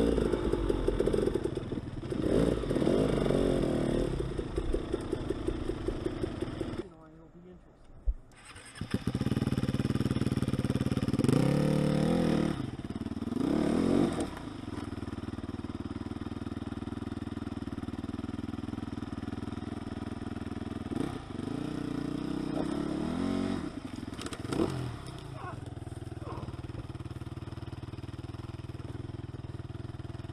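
Dirt bike engine running close at low speed, with several short revs that rise and fall in pitch. The engine sound drops out suddenly about seven seconds in, then carries on.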